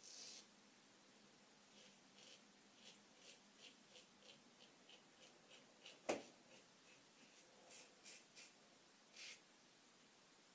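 Mühle R106 safety razor with a Gillette 7 O'Clock Sharp Edge blade scraping through lathered stubble on the neck in short, faint strokes, about two a second. A single sharp click about six seconds in.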